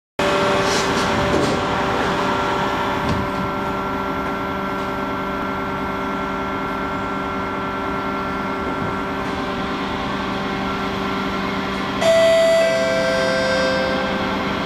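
Kawasaki C751B MRT train running at steady speed, heard from inside the carriage: a constant rumble with a steady motor whine. About twelve seconds in, a two-note falling chime sounds, the signal that a next-station announcement is coming.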